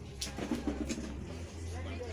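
Low murmur of a voice over a steady low hum, with two sharp ticks in the first second.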